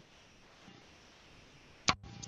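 Near silence with faint hiss, broken just before the end by a single sharp click.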